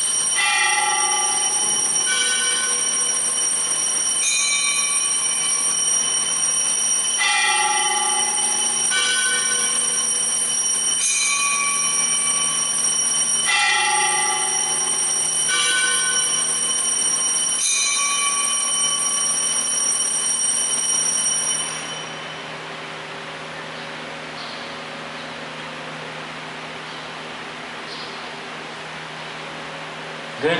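Altar bells rung at the elevation of the host during the consecration of the Mass: a steady high ringing with clear bell strokes of different pitches on top about every second or two, stopping about 22 seconds in.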